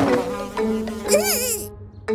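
Cartoon sound effect of a fly buzzing, its pitch wavering up and down about a second in, over soft sustained background music.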